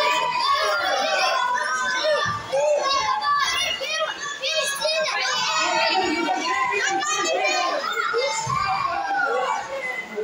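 Many children's voices shouting and calling out over one another in a continuous, high-pitched clamour that eases a little near the end.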